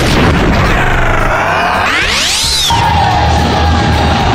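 Broadcast-style logo transition sound effect over music: a sharp hit at the start, a whooshing sweep that rises in pitch and cuts off suddenly a little past halfway, then a held steady tone.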